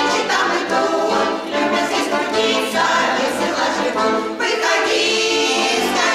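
Women's folk vocal ensemble singing a Russian folk song together in sustained phrases, with accordion accompaniment.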